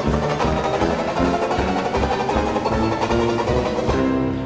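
Traditional jazz band playing a fast tune: banjo strumming chords in a driving rhythm over tuba bass notes.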